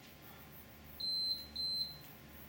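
Two short, high-pitched electronic beeps about half a second apart.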